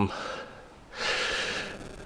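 A man's audible in-breath through the mouth, a breathy hiss that starts about a second in and fades away.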